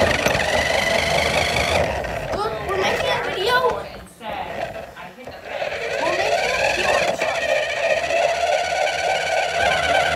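Small electric motor of a toy remote-control truck whining steadily as it drives, dropping away for about a second and a half near the middle before picking up again.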